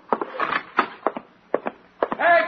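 Radio sound-effect footsteps on a wooden floor: a run of sharp knocks, about three a second, growing uneven in the second half.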